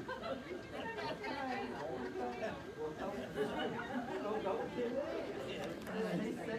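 Indistinct background chatter: several people talking at once in a room, no single voice clear.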